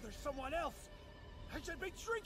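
Faint audio from the anime episode: a short cry that rises and falls in pitch, then a briefer one near the end, over quiet music.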